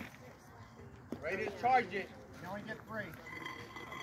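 Faint, distant voices of people talking, in a lull between louder nearby speech.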